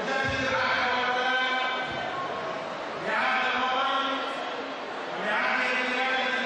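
A man's voice amplified over a public-address system, delivered in three long, drawn-out, chant-like phrases with held notes.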